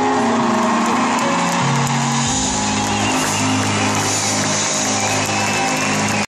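A live band playing on stage: long held chords over a bass line that steps down and then up.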